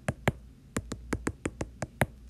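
Stylus tip tapping on a tablet's glass screen, drawing a dashed line one dash at a time: a run of quick sharp taps, about five a second, with a short pause about half a second in.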